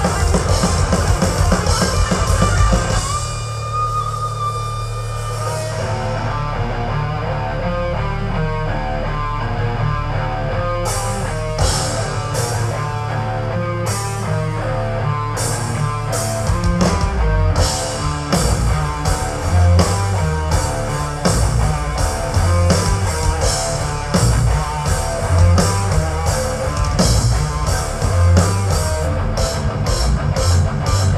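Thrash metal band playing live through a PA: distorted electric guitar, bass and drums. About three seconds in the drums stop and a held guitar note rings out. A guitar riff then carries on alone, with drum and cymbal hits coming back in around eleven seconds in and the full band driving again from about halfway through.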